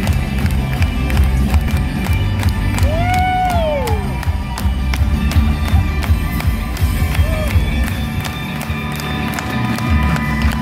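Live rock music played loud: electric guitar over a heavy bass and drum low end. A long sliding vocal note rises and falls about three seconds in.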